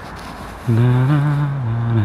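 A cow mooing: one long, loud call that begins about two-thirds of a second in and is still going at the end, part of a run of repeated moos.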